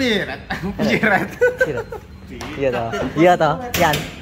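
Men talking and chuckling.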